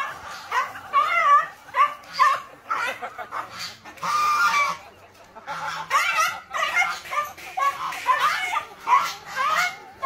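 A domestic goose honking over and over while a dog barks and yelps at it as they fight. The calls come in quick short bursts, with one longer call about four seconds in.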